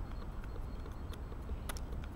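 Helle Eggen knife carving a stick of green wood: a few short, sharp snicks of the blade biting into the wood, the clearest near the end, over a steady low background rumble.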